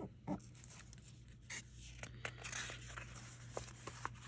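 Soft rustling of a paper sticker sheet, with a few light taps and a sticker being peeled off its backing, over a faint steady low hum.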